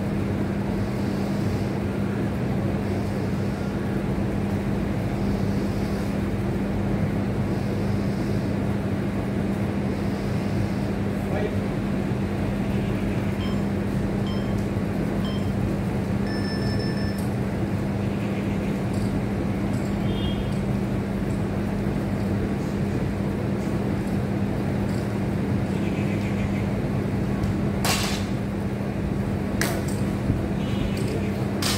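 A steady low hum over constant background noise, with two sharp clinks near the end as barbell plates knock.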